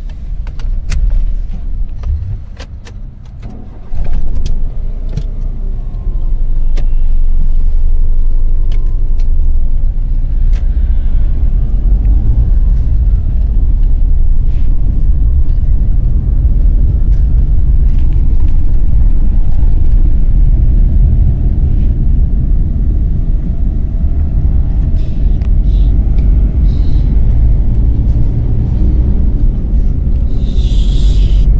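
A few sharp clicks and rattles as a car seat belt is pulled across and fastened, then about four seconds in the car's engine starts. From about six seconds the engine and road noise run loud and steady, heard from inside the cabin as the car is driven, with keys jangling on the ignition.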